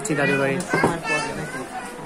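Speech only: voices talking, a child's high voice among them, over a steady low hum.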